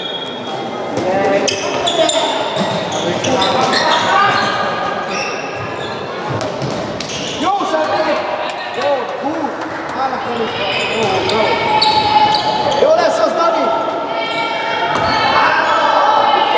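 A handball bouncing on a wooden sports-hall floor during play, with players shouting, all echoing in a large hall.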